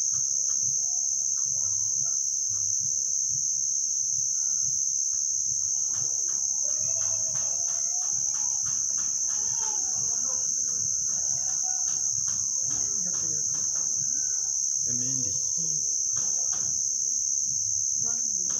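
Crickets chirping in a continuous high-pitched trill, the loudest sound throughout. Faint distant voices and occasional clicks sit underneath.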